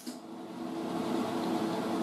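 MIG welder humming steadily at idle, its cooling fan running between spot welds on auto body sheet metal, with no arc struck.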